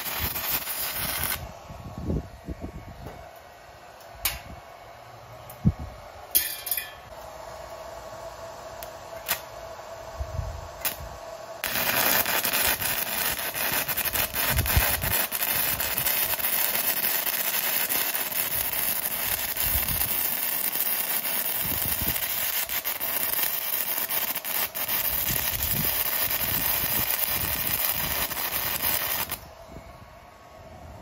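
Stick-welding arc from a small portable inverter welder burning a 6013 rod at about 110 amps, crackling and sizzling. The crackle drops away about one and a half seconds in, leaving only a few sharp snaps. It resumes about twelve seconds in and runs steadily until it stops near the end.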